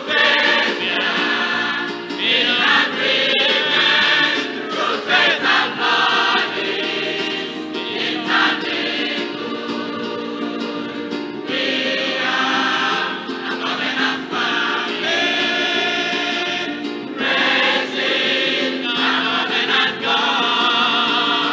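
Mixed adult church choir singing a gospel song in parts, phrase after phrase with brief breaths between lines.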